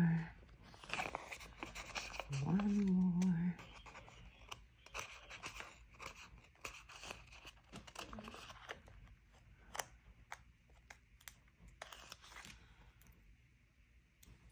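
Stickers being peeled from their backing sheet and paper handled, with scattered light crinkles and small clicks and ticks.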